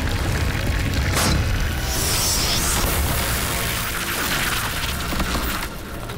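Cartoon transformation sound effects over dramatic music: a deep, continuous rumble of dark magic engulfing a character, with a whoosh about a second in and a high shimmering hiss a little later.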